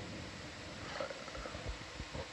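Low rumbling background noise with a few soft, low thumps about a second and a half in.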